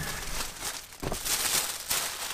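Plastic shopping bags and the cellophane wrapping of a bunch of roses rustling as they are handled and lifted out of a car boot, with a few light knocks; loudest about a second and a half in.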